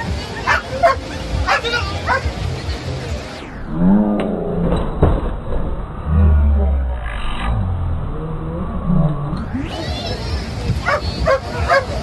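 A dog barking while it attacks and bites a decoy in a padded bite suit during protection training, with people's voices around it.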